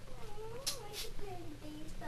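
A drawn-out, wavering high-pitched vocal sound that glides up and down for about a second and a half, ending in a short lower note, with two faint clicks partway through.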